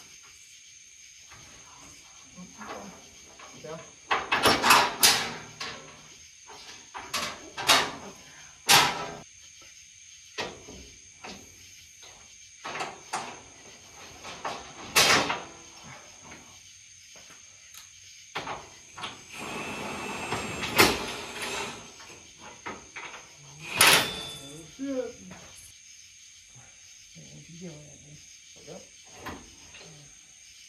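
Sharp metal clanks and knocks, a handful of separate strikes spread out over the time, as steel suspension link bars are handled and fitted into frame brackets. A steady high-pitched tone runs underneath.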